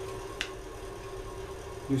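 Low steady hum with a single faint click about half a second in.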